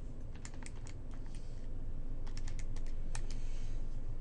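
Calculator keys being pressed to enter a multiplication, an irregular run of light clicks with a short pause about halfway through.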